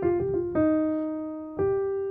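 Piano playing a gospel melody with grace notes: a quick F–G grace-note flick at the start, a note held from about half a second in, then another note struck about a second and a half in.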